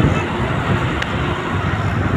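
Steady road and traffic noise heard from a moving vehicle in city traffic: a low rumble of engines and tyres, with two light clicks, one at the start and one about a second in.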